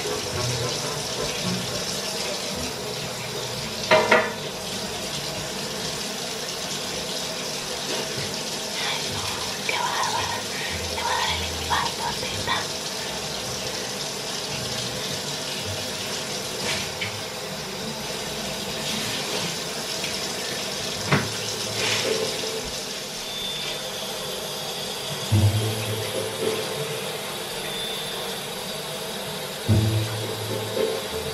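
Bathroom sink tap running steadily, with a few short knocks and clatters of things handled at the sink.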